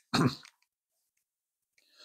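A man's single short cough, with near silence after it.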